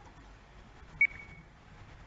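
A single short, high-pitched beep about a second in, ringing briefly as it fades, over faint room noise.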